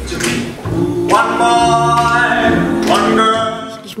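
Men's vocal group singing in close harmony over a plucked upright double bass, holding a long sustained chord from about a second in that breaks off just before the end.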